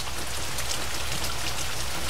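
Pouring rain falling steadily, a dense even patter of drops.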